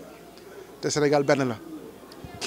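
A man's voice: a short spoken phrase about a second in, after a brief pause.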